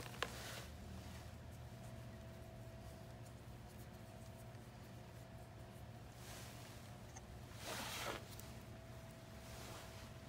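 Quiet shop room tone with a steady low hum, a single sharp click just after the start, and a few brief soft rustles about six and eight seconds in, from hands handling small rubber A/C O-rings.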